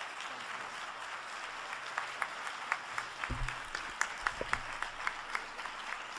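Audience applauding: a steady patter of many hands, with single sharp claps standing out more and more in the second half. A low bump sounds briefly about halfway through.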